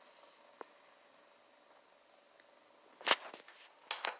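A faint steady high-pitched tone from the television, then two sharp knocks, one about three seconds in and one at the very end, as the recording device is handled and swung away.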